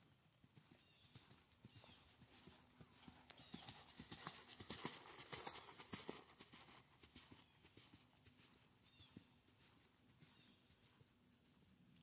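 A horse's hoofbeats trotting on sand arena footing. They are faint at first, grow louder as the horse passes close about four to six seconds in, then fade again.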